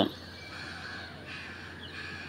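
Faint bird calls over low steady room noise.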